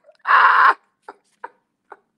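A man's loud burst of laughter lasting about half a second, then short, spaced gasps of laughter, two or three a second.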